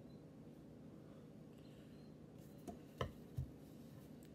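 Quiet room tone with a steady faint hum, broken by three short soft knocks about three seconds in.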